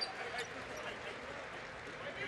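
Basketball bouncing on a hardwood court over the steady murmur of an arena crowd, with two short knocks in the first half second.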